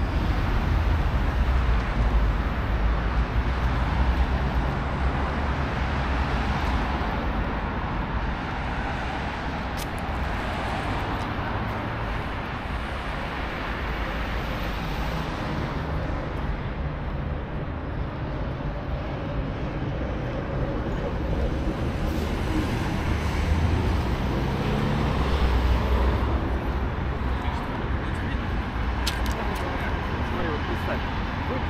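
City street ambience: a steady rumble of road traffic from cars on the avenue, with passersby talking.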